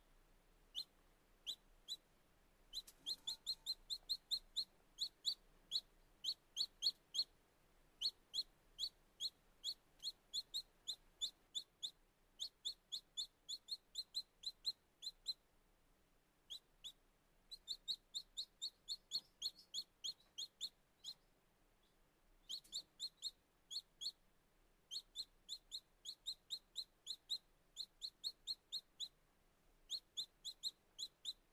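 Baby chicks peeping: short, high cheeps that slide down in pitch, in runs of about three a second broken by brief pauses.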